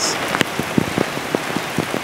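Rain falling on a car, heard from inside the cabin: a steady hiss with irregular sharp ticks of drops striking the roof and glass.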